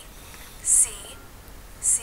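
Speech only: a recorded voice from a textbook listening exercise spelling a name letter by letter, with two short hissing letter sounds about a second apart.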